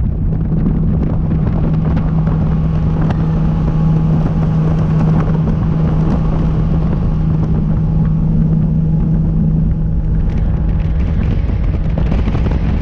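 Outboard engine of a Nitro Z20 bass boat running at speed: a steady low drone, with wind rush on the microphone and water noise. The engine's steady tone drops away about ten seconds in.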